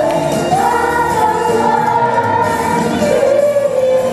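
A cast singing together in a stage musical, holding a long high note and then moving to a lower one near the end.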